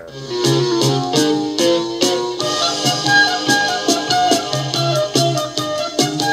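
Symphonic progressive rock recording playing, with keyboards, guitar, bass and a regular drum beat, segueing back into the song's opening theme. The level dips briefly right at the start.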